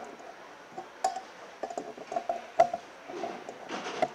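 Light clicks and taps of a wire terminal being pushed onto a gauge in a dash gauge pod by hand, with one sharper click about two and a half seconds in.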